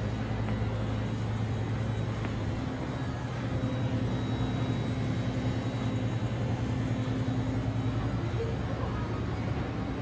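Steady low hum under an even wash of background noise, with a fainter steady higher tone above it.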